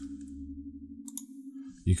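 Two quick mouse clicks about a second in, over a steady low hum; a man's voice starts near the end.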